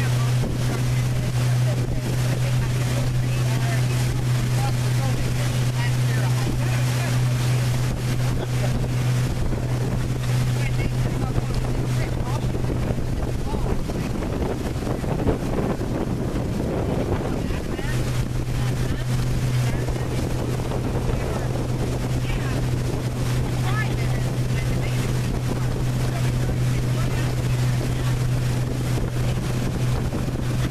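A pontoon boat's motor running steadily at cruising speed, a constant low drone under wind buffeting the microphone and water rushing past the hull. Around the middle the drone drops out for a few seconds while the wind noise swells.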